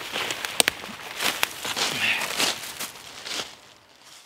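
Footsteps crunching through dry fallen leaves, with a few sharp snaps of twigs underfoot, the sharpest about half a second in; the steps get quieter near the end.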